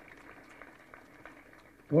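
Faint steady hiss of room noise while the man at the podium microphone pauses between sentences. His amplified voice starts again just before the end.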